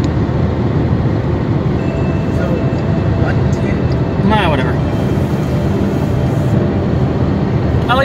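Steady road and engine noise inside a car's cabin while it drives at highway speed. A brief voice is heard about halfway through.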